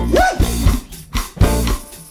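Live band playing an instrumental break with electric bass guitar and drum kit in a stop-start groove, dropping out briefly twice between hits.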